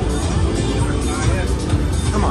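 Buffalo Triple Power slot machine spinning its reels, with its game music and spin sounds over steady casino background noise.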